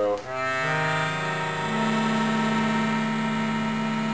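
Bass side of a Giulietti free-bass (chromatic C-system) accordion playing a diminished chord. The low notes come in one after another over the first second and a half, and the chord is then held steady.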